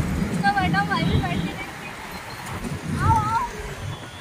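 Background song: a woman's singing voice in two short, wavering melodic phrases, one just after the start and one about three seconds in.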